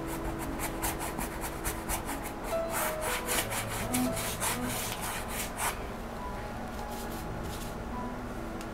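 A nylon flat brush scrubbing acrylic paint across a canvas in repeated short strokes, which stop about six seconds in.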